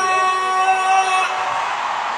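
Live concert music over an arena PA: a held note that stops about a second and a half in, leaving the noise of the crowd.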